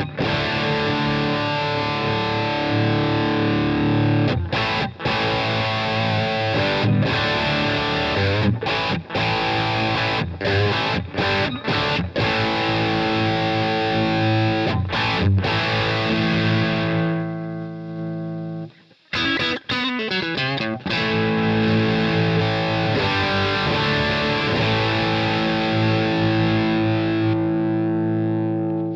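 Distorted electric guitar played through the Egnater Boutikit 20-watt 6V6 all-tube head with its gain switch pulled out for extra gain: heavily overdriven riffs and chords. About two-thirds of the way in, a held chord rings and fades and the sound briefly drops away, then the playing resumes.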